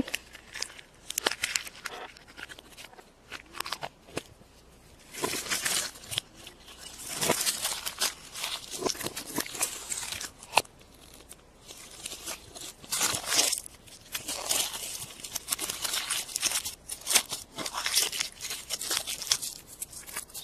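Foil wrapper of a chocolate surprise egg crinkling and tearing as it is peeled off by hand, mixed with irregular clicks and snaps from handling the plastic toy capsule and the broken chocolate shell.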